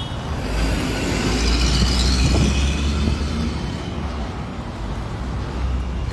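Car driving along an asphalt road, its tyre hiss strongest in the first half, over a steady low rumble.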